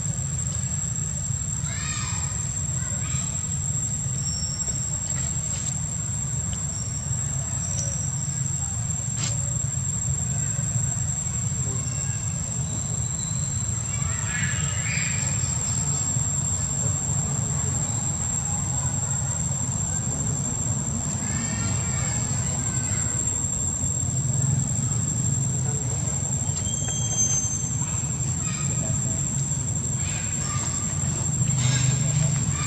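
Outdoor ambience: a steady low rumble under a continuous high, thin insect drone, with a few short high-pitched calls about two, fifteen and twenty-two seconds in.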